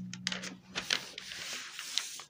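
A large sheet of paper being folded in half and creased flat by hand on a desk: rustling and sliding paper with a few sharp crackles as the fold is pressed down.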